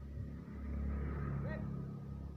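A motor vehicle passing by on the road, its engine hum swelling to a peak about a second in and then fading away.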